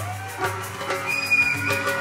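Violin playing a lead line over the live band's bass and drums, sliding between notes and holding a bright high note about a second in.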